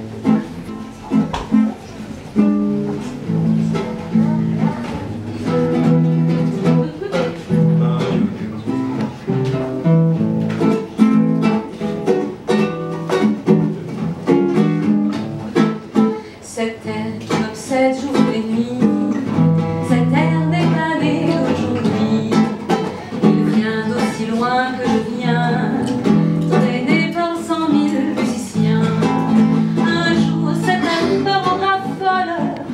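A woman singing live with a classical guitar plucked in accompaniment.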